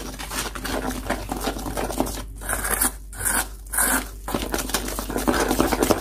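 A metal spoon stirring a thick gram-flour (besan) and water batter in a stainless steel bowl, scraping the bowl with quick, continuous strokes.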